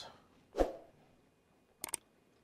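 Brief handling sounds on a plastic RC truck chassis: a short knock about a third of the way in, then a quick cluster of sharp clicks near the end, with quiet between.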